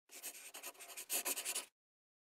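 Brief scratching sound of quick strokes, like a pen writing on paper, accompanying an animated logo intro; it is louder in its second half and stops suddenly just before the logo appears.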